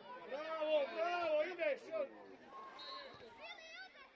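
Voices shouting during play on a football pitch, loudest in the first two seconds, with further shorter calls near the end.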